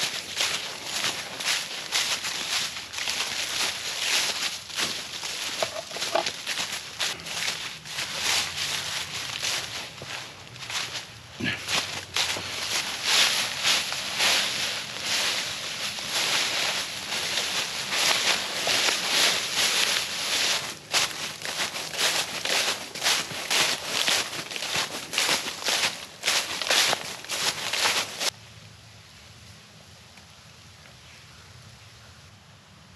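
Footsteps shuffling and crunching through a thick layer of dry fallen leaves, about two steps a second, stopping abruptly near the end.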